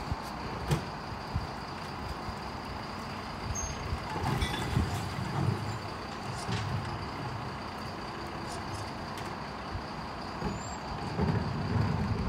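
Mercedes-Benz Econic bin lorry running at a distance while its Terberg OmniDEL lift tips a wheelie bin: a steady engine hum with a faint steady high whine, and low rumbling swells about four seconds in and again near the end.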